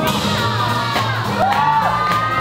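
Live jazz band striking up a swing tune, a steady stepping bass line under the horns and drums, with the crowd whooping and shouting about a second and a half in.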